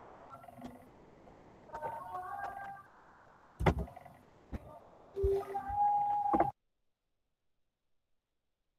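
Faint voices and a sharp knock coming through a video-call connection, cutting off suddenly to dead silence about six and a half seconds in.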